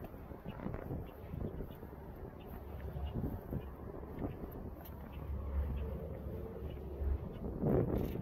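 Wind buffeting the microphone, a low rumble that swells for a couple of seconds after the middle.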